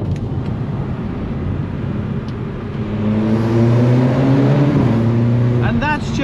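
Stage 2 Audi S3 8P's turbocharged four-cylinder heard from inside the cabin over road noise. About halfway through its exhaust note, from a resonator-deleted exhaust with a 200-cell downpipe, grows louder and steadier as the revs climb slowly.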